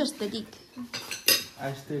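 A metal fork clinking and scraping against a ceramic plate while eating, with a few sharp clinks, the loudest just past the middle.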